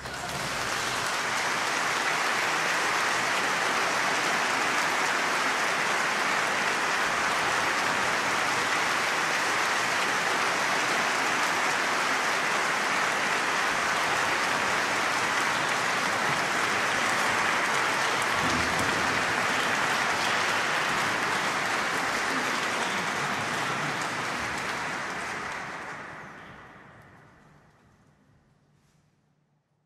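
Concert audience applauding, a steady dense clapping that fades out over the last couple of seconds.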